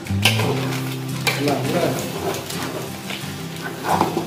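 A spoon stirring and scraping a thick, wet spiced gunda mixture in an aluminium pot, with a few irregular knocks against the pot side.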